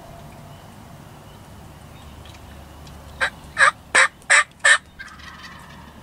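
A run of five loud turkey yelps, evenly spaced about a third of a second apart, starting about three seconds in.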